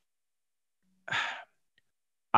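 A man's single short sigh about a second in, with silence before and after it.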